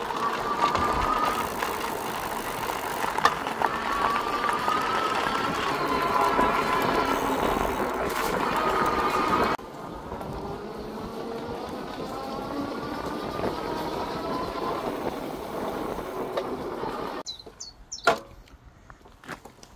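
Electric bike being ridden: tyre and wind noise with a faint motor whine that drifts up and down in pitch. The noise drops suddenly about halfway through, then dies away shortly before the end as the bike stops.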